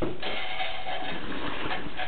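Steady mechanical whirring and rattling from a sewer inspection camera's push cable being pulled back through the drain line and onto its reel.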